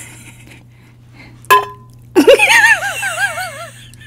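A single sharp clink about a second and a half in, then a woman laughing loudly for about a second and a half in a quick run of rising-and-falling giggles.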